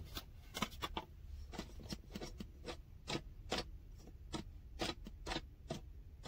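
Irregular light clicks and clacks of hard plastic as a set of stackable RV leveling blocks is handled.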